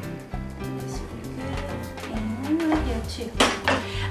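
A kitchen knife knocking against a wooden cutting board as a thin egg omelet is sliced into strips, with a louder knock about three and a half seconds in, over steady background music.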